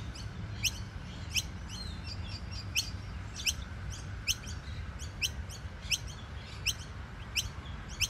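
Noisy miner chicks giving loud, sharp, high-pitched calls in a steady series, about one every 0.7 seconds with fainter calls in between. The chicks are calling for their parents.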